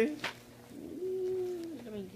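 A wordless hum from a person: one held low note about a second long that drops in pitch at the end.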